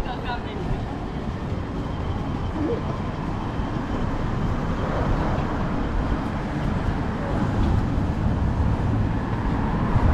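Busy city street ambience: a steady rumble of road traffic with passers-by talking in the background, growing a little louder near the end.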